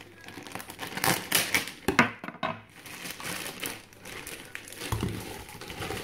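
Plastic bag of frozen spinach crinkling and rustling as it is handled and emptied into a pot, with sharp crackles, loudest between about one and two and a half seconds in.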